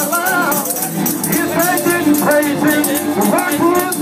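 Lively gospel worship music: voices singing over held instrumental tones, with a tambourine shaken in a fast, even rhythm throughout.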